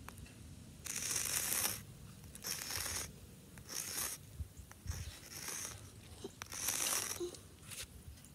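Sidewalk chalk scraping across concrete in five strokes, each a scratchy rasp lasting up to about a second.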